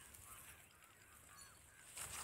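Near silence, with faint short bird calls repeating.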